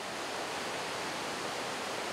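Steady rushing noise of a river flowing past.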